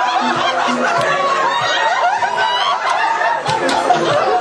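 Several people laughing and giggling together over music with a steady beat.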